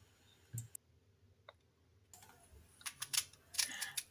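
Faint, crisp clicks and small crunches of a knife cutting the core out of a halved apple, scattered at first and coming closer together in the last second or so.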